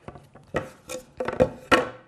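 Pine floorboards knocking and sliding against each other and the table saw's top as they are moved and butted together: a handful of sharp wooden knocks, the loudest near the end.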